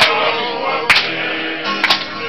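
Tongan kava-club group singing, men's voices together, with a sharp hand clap about once a second.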